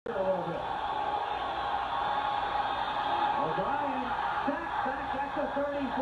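Football broadcast playing through a television speaker: steady stadium crowd noise with indistinct voices talking over it.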